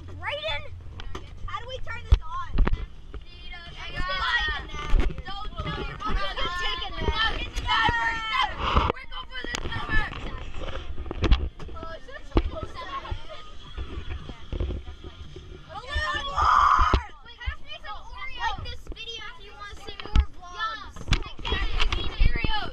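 Several children talking and shouting over one another in a car cabin, with a low rumble underneath. Sharp knocks and thumps cut in now and then.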